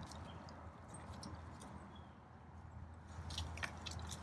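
Cougar biting and chewing food off a wooden feeding stick: faint chewing with scattered clicks, and a short run of sharper clicks near the end as its teeth work at the stick.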